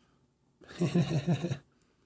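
A man laughing: a quick run of breathy 'ha' pulses, starting just over half a second in and lasting about a second.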